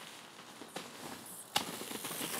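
Mountain bike rolling over a leaf-covered dirt trail: faint tyre crackle and rattle, with a light click and then a sharp knock about one and a half seconds in.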